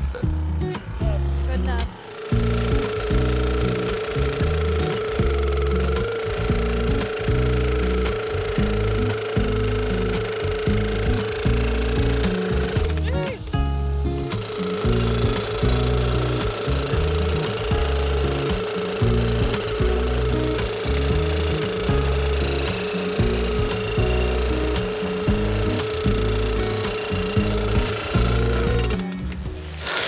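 Gas-powered post driver running and hammering steel T-posts into rocky ground, a steady engine tone over repeated pounding. It stops briefly about two seconds in and again about halfway through, as it is moved to the next post.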